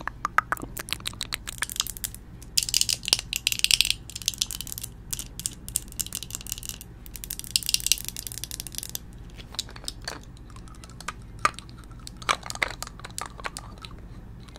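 Close-miked ASMR hand sounds: fingers and long nails tapping, scratching and handling makeup containers, giving dense crackling and clicks. Two longer bursts of scratchy rustling come about three seconds in and again around eight seconds in.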